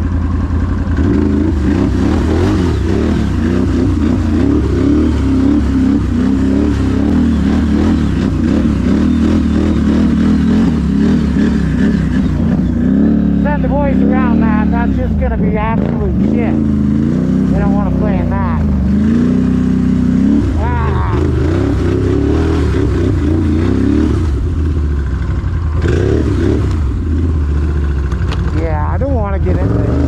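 Can-Am ATV engine running under way, its pitch rising and falling with the throttle and revving up and down several times about halfway through.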